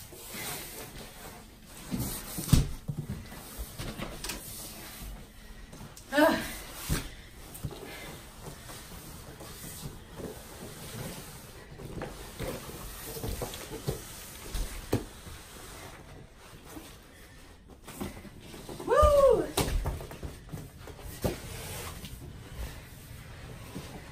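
A boxed Lull mattress being pushed up carpeted stairs: scattered dull thumps and knocks as the box bumps over the steps. Brief vocal sounds from a person come about six seconds in and again near the end.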